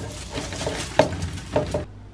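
Dry, burnt kale crisps rustling and scraping on a metal baking tray as it is handled, with a few light clicks and knocks.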